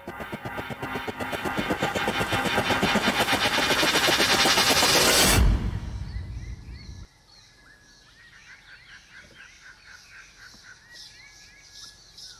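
Soundtrack build-up: a fast rattling rhythm swells steadily louder, cuts off about five and a half seconds in, and dies away over the next second or so. After that, faint bird chirps are heard.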